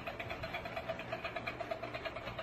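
A small battery motor in a toy hand whirring steadily with a rapid soft ticking.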